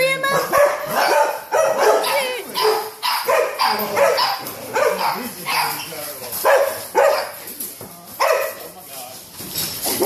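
Dog barking and whining in an excited greeting, short pitched calls coming about twice a second with a gliding squeal among them.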